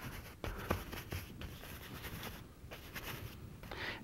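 Brush scrubbing oil paint onto a stretched canvas in short strokes: a soft, scratchy rustle with irregular small ticks.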